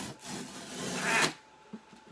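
Cardboard boxes scraping and rubbing against each other as one is pulled out of a tightly packed cardboard shipping box. The scraping grows louder and then stops suddenly about two-thirds of the way through, followed by a single faint tap.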